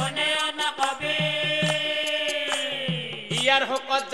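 Assamese Nagara Naam devotional singing: a voice holds one long note that sags in pitch and fades about three seconds in, over a steady beat of drum strokes; the rhythmic chant and drumming pick up again near the end.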